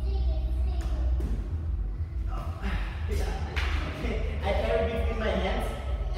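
Low talk in a large, echoing hall over a steady low hum, with a few short thumps and shuffles of feet on the wooden gym floor.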